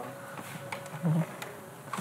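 A faint steady buzzing hum, with a few light taps and one short low voice sound about a second in.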